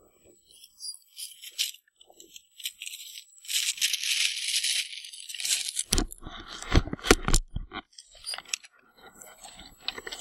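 Boots crunching and scuffing on hard-packed snow, with scattered clicks and rattles from handling gear. A run of loud knocks comes about six seconds in and lasts a couple of seconds.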